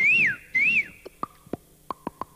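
A person whistling two short chirps, each rising and then falling in pitch, followed by a run of sharp clicks.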